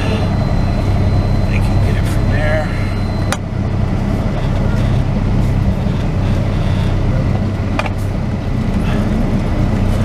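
Semi-truck diesel engine running at low speed, heard from inside the cab while the truck is maneuvered slowly. A sharp click sounds about a third of the way in and another a little before the end.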